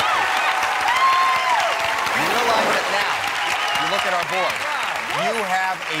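Studio audience applauding and cheering, with high excited shouts in the first couple of seconds; a man's voice starts talking over the applause near the end.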